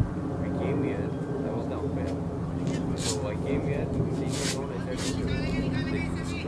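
Indistinct voices of players on a cricket field over a steady low hum.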